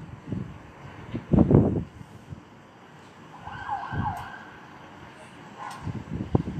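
A distant emergency-vehicle siren wavering up and down for about a second, midway through, under loud bursts of low rumble on the microphone, the strongest about a second and a half in.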